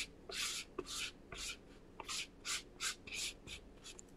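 Derwent Inktense stick rubbed back and forth across a damp foam stamp: faint, scratchy strokes, about two a second.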